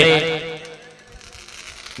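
A man's voice holds a long drawn-out word that fades within the first second, followed by a faint crackle of fireworks.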